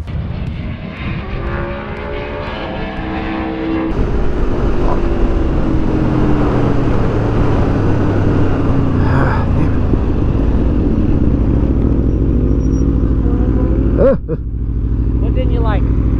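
Aprilia RSV4 V4 engine heard onboard at track speed, its pitch rising and falling with the throttle over a rush of wind. Near the end it slows, then runs at a low steady idle.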